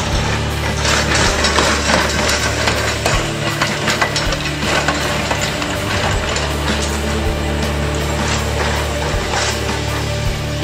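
Double-deck electric tram passing on street track, its wheels and running gear clattering and clicking over the rails, with background music underneath.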